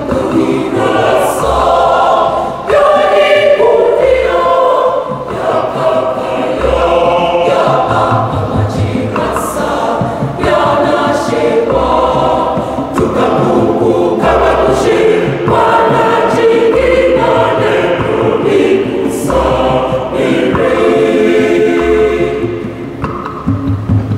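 Church choir singing a communion song in several-part harmony, with a low tone sounding every two to three seconds underneath.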